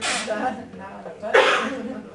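Quiet voices, then one short, loud vocal burst from a person just past halfway.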